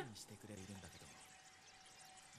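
Faint dialogue from an anime played quietly in the background, dying away within the first second to near silence with a faint steady tone.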